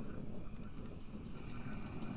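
Handheld heat gun running, a steady low whir of blowing air as it warms the encaustic wax surface to make it tacky.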